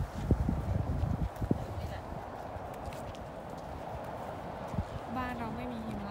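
Footsteps on pavement, a few knocks in the first second and a half, then a steady outdoor background hum. About five seconds in, a person's voice begins.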